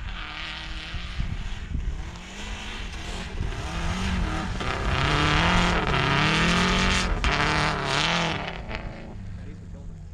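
Subaru rally wagon's flat-four engine revving up and down as the car slides through snow, heard at a distance; the engine is loudest from about four to eight seconds in. A low wind rumble on the microphone runs underneath.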